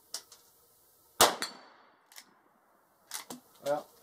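A single .44 Magnum rifle shot from a Rossi R92 lever-action carbine with a 16-inch barrel, about a second in, followed by a faint high ring as the steel plate target is hit. A few small clicks come before and after the shot.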